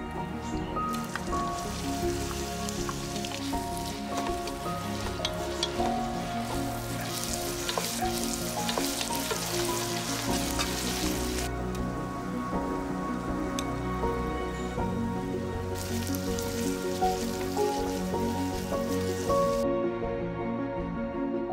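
Sliced onions sizzling in hot oil in a pot as they are stirred with a wooden spatula, over steady background music. The sizzle starts about a second in, drops away a little past halfway, and comes back near the end.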